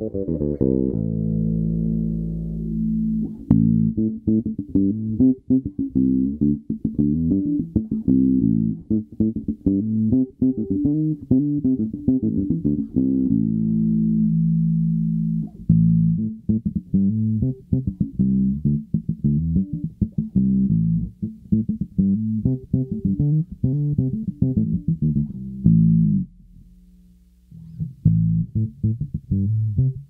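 Sire V3 jazz bass played fingerstyle through its Lusithand NFP filter preamp: a steady run of plucked notes with a dark tone and little treble. The playing stops briefly near the end, then picks up again.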